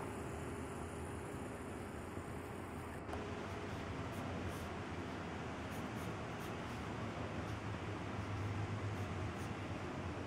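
Pencil strokes scratching faintly on sketchpad paper, over a steady room hum.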